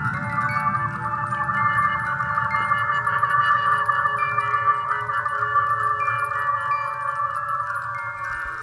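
Contemporary chamber ensemble music: a dense cluster of long held tones, with single tones entering and dropping out at different moments, over a low rumbling noise.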